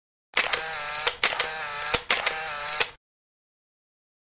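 Editing sound effect: three short mechanical whirs in a row, each beginning and ending with a sharp click, like a camera winding on.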